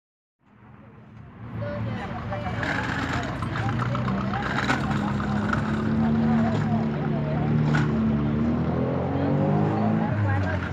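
Several people talking at once over a motor vehicle engine running steadily, whose pitch rises near the end.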